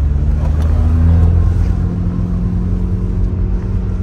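Swapped 1.9 TDI PD150 four-cylinder turbodiesel in a VW Caddy van pulling under hard acceleration, heard from inside the cab: a loud, deep, steady drone that begins abruptly just before and holds on, with a higher tone fading out about a second in.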